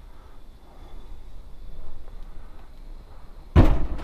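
A caravan's Thetford fridge-freezer door shut with a single thud about three and a half seconds in, after a few seconds of low, quiet rumble.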